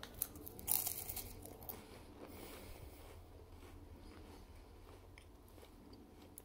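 A bite into a dry, crisp strawberry creme wafer cookie: sharp crunching in the first second or two, loudest a little under a second in. Softer chewing follows and fades toward the end.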